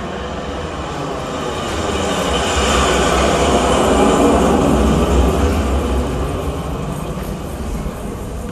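Recorded sound effect of a train passing by, a deep rumbling, rolling noise that swells to its loudest about four seconds in and then fades.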